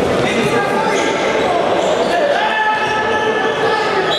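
Indoor futsal play: trainers squeaking on the sports-hall floor in several held squeaks, over players' shouts echoing in the hall.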